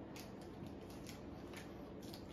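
Faint crinkling and rustling of paper napkins being handled at a table, a string of small crackles over quiet room tone.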